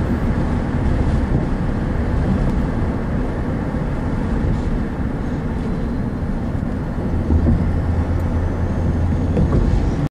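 Steady rumble of a car driving along a road, road and engine noise, with a deeper hum growing stronger from about seven seconds in.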